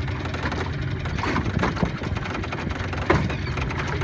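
Small four-stroke outboard motor idling steadily, with a sharp click about three seconds in.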